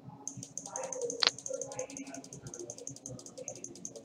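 Rapid, even clicking of a computer mouse, about eight to ten clicks a second, repeatedly pressing undo to erase whiteboard annotations. There is one louder sharp tap a little over a second in.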